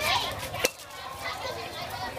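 A single sharp knock of a cleaver striking a chopping board about a third of the way in, over the steady chatter of nearby voices.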